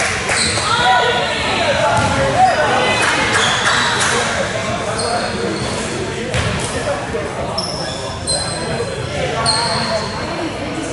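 Indoor basketball game: a ball bouncing on a wooden court among players' and spectators' calling voices, echoing in a large hall, with a few short high squeaks in the second half.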